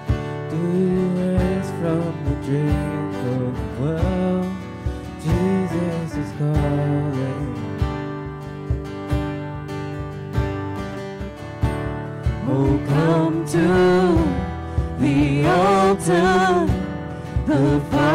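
Live worship band playing a slow song on strummed acoustic guitars, keyboard and cajón, with a regular beat. Singing comes in strongly about two-thirds of the way through.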